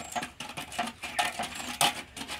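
A stick stirring liquid in a metal bucket, knocking against the bucket's side in a quick, irregular run of clinks. The loudest knock comes near the end.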